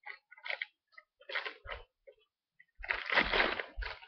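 Toy packaging being opened and handled by hand: scattered short rustles and crinkles, then a longer, louder stretch of crinkling starting a little before three seconds in.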